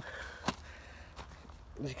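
A single sharp knock about half a second in, over a faint steady background; a man's voice starts near the end.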